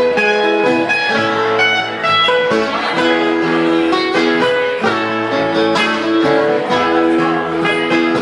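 Small acoustic band playing an instrumental passage: acoustic guitar picked up close, with upright bass notes underneath and a lead line of held notes over them.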